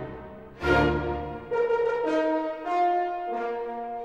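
Background music: a slow melody of held notes. The opening notes fade, and a new phrase begins about half a second in.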